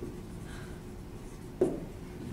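Faint scratching of writing over low room noise, with a single word spoken near the end.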